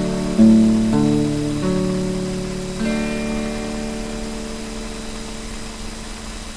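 Electric guitar played clean, moving through a few notes and chords in the first three seconds, then a last chord left to ring and fade out.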